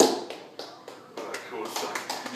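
A sharp knock at the start, then a few lighter taps and clatters, with voices and laughter in a small room.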